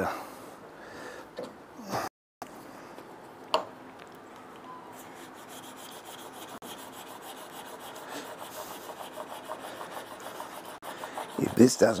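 Clothes iron's soleplate rubbing back and forth over the wood veneer on a harp neck, heating it to melt the glue under a lifting air bubble. A light scraping that gets louder and quicker in the second half, with a single click about three and a half seconds in.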